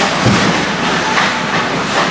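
Ice hockey play: skates scraping the ice and sticks clacking, with a thud against the rink boards about a quarter second in.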